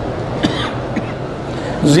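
Steady background hum and hiss of a microphone recording, with one short sharp sound about half a second in. A man's voice starts through the microphone near the end.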